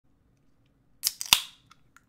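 Three sharp cracks in quick succession about a second in, the third the loudest, with a short ringing tail.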